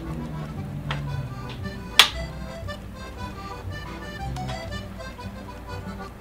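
Background music with steady low notes, and a sharp metallic click from the flintlock blunderbuss's lock about two seconds in, after two fainter clicks, as the lock is worked at half-cock.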